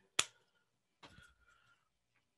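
A single sharp click from a small object handled in the hands, then faint rustling about a second later.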